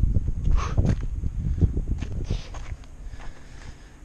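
Footsteps of a person walking down a paved hillside path, with a low rumble on the microphone; the steps thin out and grow quieter about two and a half seconds in.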